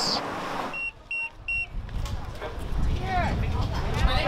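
A restaurant queue pager beeping three times in quick succession, short high beeps signalling that the table is ready. Crowd chatter and a low street rumble follow.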